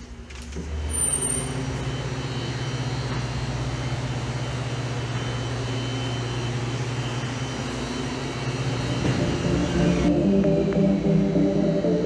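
A steady low hum with a hiss over it. Sustained music chords come in about nine seconds in and grow louder toward the end.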